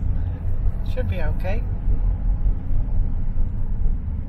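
Steady low rumble of engine and road noise inside a moving car's cabin, with a brief voice about a second in.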